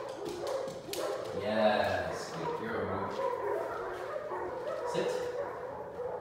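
A dog whining and yipping on and off, in a high, wavering voice.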